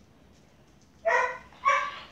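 A five-week-old Newfoundland–Great Pyrenees mix puppy giving two short, high-pitched yipping barks about half a second apart, about a second in.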